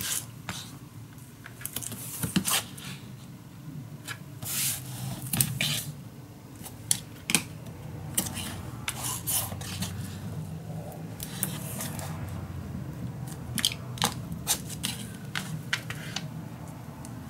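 Tape being pulled off a roll and pressed down along the edges of chipboard on cardstock, with short, sharp crackles and clicks as it is unrolled, handled and cut at the corners.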